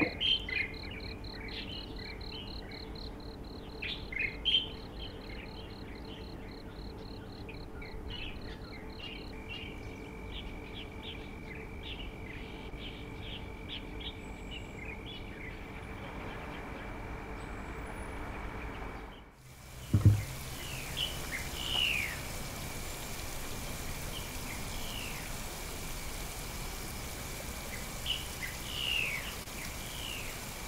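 Outdoor nature ambience: birds chirping and an insect trilling, first as a fast pulsing tone and later as a steady high drone. About two-thirds through, the sound cuts out briefly, a single low thump follows, and then the bird calls resume.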